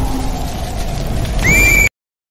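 Animated fire-bird sound effects: a steady low rumble, then about one and a half seconds in a loud, shrill, warbling cry of short repeated rising notes that cuts off abruptly.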